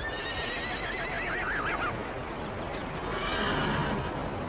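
A horse whinnying: one call about two seconds long that starts high, holds, then quavers and falls in pitch. A second, breathier sound follows near the end.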